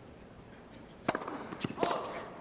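Tennis racket striking the ball on a serve about a second in, followed about half a second later by more sharp ball hits as it is returned, with a short voice-like sound near the end.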